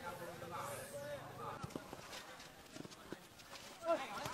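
Faint pitch-side sound of a small-sided football match: distant players' shouts, with a couple of soft knocks about a second and a half in.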